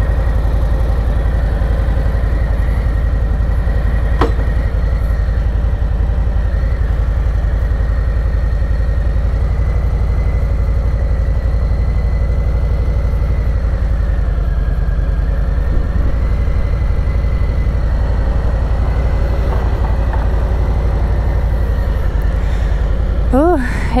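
2019 Harley-Davidson Low Rider's Milwaukee-Eight V-twin idling steadily with a deep, even rumble.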